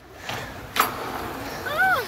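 Trolley of a playground track ride rolling along its overhead rail, a rushing rumble that builds shortly in, with a sharp clack just under a second in. A short rising-and-falling 'whoo' of a voice comes near the end.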